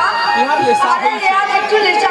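Speech: actors delivering stage dialogue, with voices chattering underneath.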